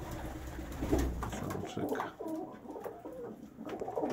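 Domestic pigeons cooing in a loft, several short low calls.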